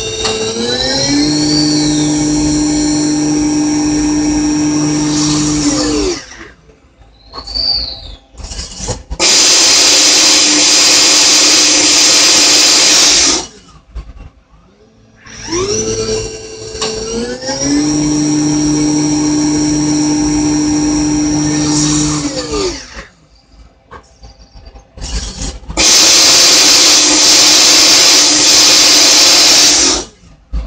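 CNC production lathe running its automatic part cycle twice. Each time the spindle whines up to speed, holds steady tones for about five seconds while cutting, then winds down, and a loud hiss follows for about four seconds before the cycle starts again.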